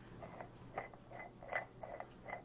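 PVC sink-drain adapter being twisted on the threaded plastic tail of an RV sink strainer drain, the threads giving faint, short scraping clicks about three times a second.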